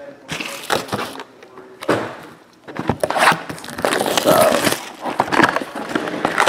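Foil trading-card pack wrappers crinkling as packs are handled, in several irregular bursts.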